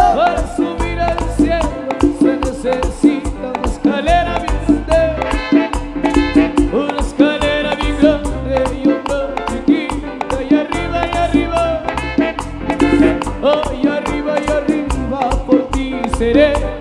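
Live band playing upbeat Latin dance music, with a steady percussion beat, a strong bass line and melody instruments over it.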